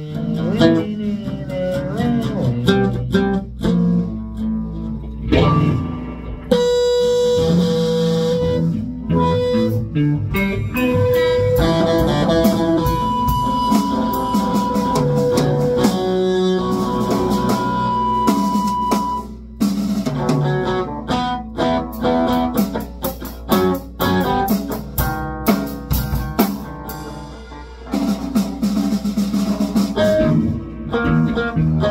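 Live rock jam: electric guitar through an amp holding long sustained notes over chords, with a drum kit and an amplified acoustic guitar.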